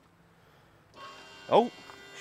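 A faint electric warning buzzer comes on suddenly about a second in and keeps sounding steadily, as power from the jump box reaches the truck's dead electrical system.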